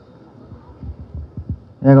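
Handling noise from a handheld microphone as it is passed from one hand to another: several soft, low thumps and bumps over about a second. A man's voice starts speaking near the end.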